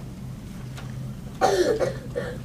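A man gives a short cough, like clearing his throat, about a second and a half in, over a faint steady low hum.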